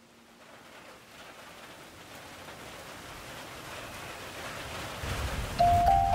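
A rushing, rain-like hiss that swells steadily louder, joined by a low rumble about five seconds in. Just before the end, a mallet-percussion melody begins.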